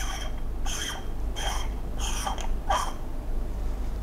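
Threaded aluminium lens element being unscrewed by hand, a series of about five short scraping twists roughly 0.7 s apart, fading out in the last second.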